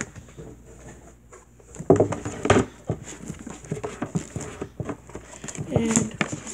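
Box-set pieces and packaging being handled and put away: a run of light knocks, clicks and rustles, loudest about two seconds in.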